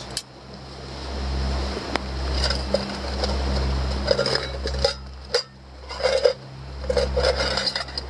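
Metal camping pots and stove parts clinking and scraping as they are handled, with a handful of sharp clicks spread through. A low rumble runs underneath, swelling and fading.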